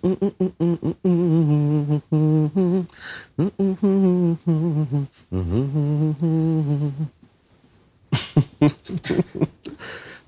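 A man humming a pop song's melody with his mouth closed, in short held phrases, then breaking off for about a second before a few short, sharp sounds.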